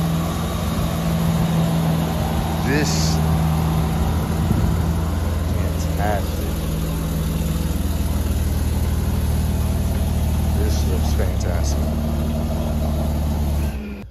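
Mercedes-AMG E43's twin-turbo V6 idling steadily, a low even hum that shifts slightly a few times, with faint voices over it; it cuts off abruptly at the end.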